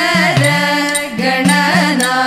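Thiruvathirakali song sung by women's voices, accompanied by an idakka drum whose low tone bends down and back up with its strokes.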